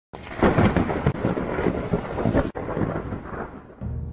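Thunder rumbling with rain, loud for the first two and a half seconds, breaking off sharply and then fading in a quieter rumble. A low steady music drone comes in near the end.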